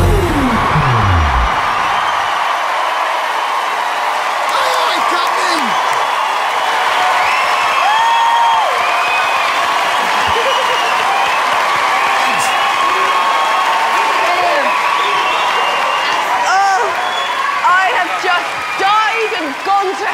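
A large studio audience cheering and applauding, with screams and whoops over a steady roar of clapping. At the start, the backing music ends on a low falling tone that dies out within about a second and a half.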